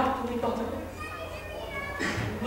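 Speech: a woman's voice speaking stage dialogue, loudest at the start and quieter through the middle, over a steady low hum.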